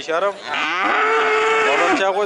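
A calf mooing: one long, level bawl starting about half a second in.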